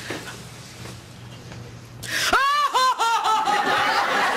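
A woman's loud, high-pitched mock funeral wail. About two seconds in it breaks out as a quick string of short sobbing cries that step down in pitch, then settles into one long held note: a professional mourner showing off her crying.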